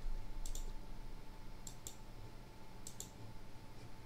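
Computer mouse clicking three times, about a second apart; each click is a quick press-and-release pair. A faint steady hum runs underneath.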